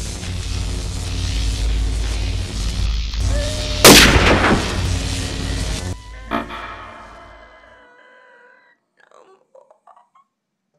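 Dense rumbling noise with a sudden loud boom-like hit about four seconds in, then ringing tones that fade away to near silence by about eight seconds in.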